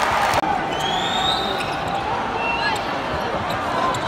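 Basketball arena crowd noise with sneakers squeaking on the hardwood court several times and a ball bouncing during play. There is a brief break in the sound about half a second in.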